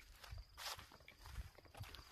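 Faint, soft footsteps on dry grass and soil: a few irregular steps, very quiet.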